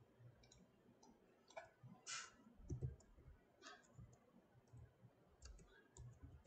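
Faint, irregular clicks of a computer keyboard and mouse as text is deleted and typed into a form label, with a louder click about two seconds in.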